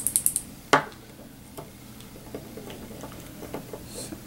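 Small handling noises of tools on a tabletop: a quick run of tiny ratchet-like clicks at the start, one sharp click just under a second in, then faint scattered taps.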